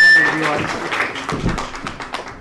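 Audience applauding a panellist's introduction, dense clapping that thins out and fades by the end. A loud high whistle cuts off just after the start.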